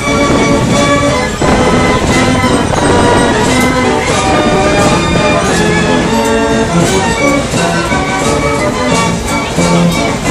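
Fairground organ on a steam gallopers carousel playing a tune, with held notes and a regular drum beat.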